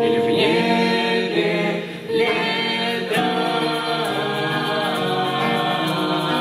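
Teenage mixed-voice vocal ensemble singing together in harmony, with a brief drop in loudness about two seconds in.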